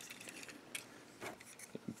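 A few faint plastic clicks from a Transformers Generations Voyager Class Whirl action figure being handled, its leg being turned at the thigh swivel.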